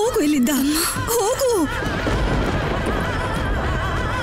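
Dramatic TV-serial background score. A wavering, falling pitched cry over the first second and a half gives way to a sustained melody with a slow vibrato.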